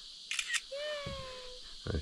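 Smartphone camera shutter sound clicking twice in quick succession, followed by a short held tone and a sharp knock near the end.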